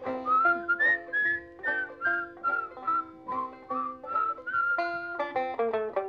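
A whistled melody carried over a plucked banjo accompaniment, in an instrumental break of a folk song.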